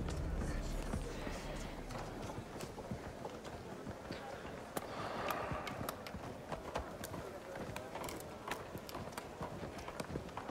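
Quiet outdoor camp ambience: an indistinct murmur of voices with scattered light knocks and clicks. A low drone fades away in the first second or so.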